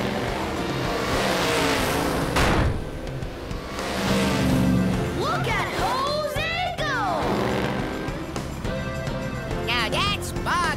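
Cartoon soundtrack music mixed with monster-truck engine sound effects during an off-road race. There are brief wordless vocal exclamations about halfway through and near the end.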